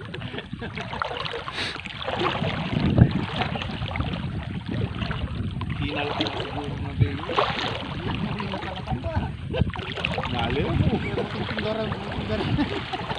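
River water sloshing and splashing around people wading waist-deep, uneven and continuous, with wind on the microphone.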